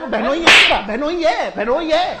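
A single sharp smack about half a second in, a hand slapping a person during a shoving scuffle, over men's raised, overlapping voices.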